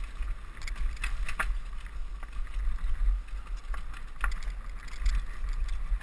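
Mountain bike ridden fast down a rough dirt trail, heard from a helmet camera: wind buffeting the microphone, tyre noise on dirt, and sharp clicks and rattles from the bike over rocks and roots, two of them louder, about a second and a half and four seconds in.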